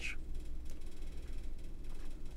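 Steady low hum of room tone, with a couple of faint clicks from a camera being handled and turned over in the hands.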